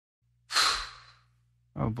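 A sped-up, pitch-raised vocal sigh about half a second in, over a faint low hum. The high-pitched sung voice of the nightcore track starts near the end.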